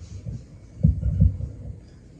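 Microphone handling noise: a quick cluster of low thumps and rumble about a second in as the mic is moved on its stand.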